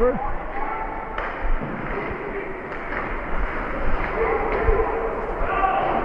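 Ice hockey play in an indoor rink: a steady hiss of skates on the ice, with a few sharp clacks of puck and sticks against it, and voices carrying through the arena.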